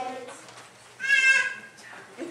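A children's choir's held note fades out, then about a second in a young child lets out one short, high-pitched call.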